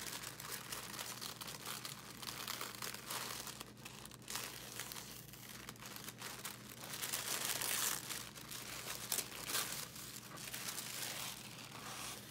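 Tissue paper crinkling and rustling as hands peel off the sticker seal and fold the wrapping open, loudest about seven to eight seconds in.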